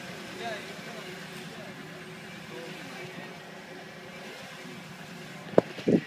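Steady low hum of a vehicle running, under faint talk. Two sharp loud knocks near the end as the phone is handled and swung.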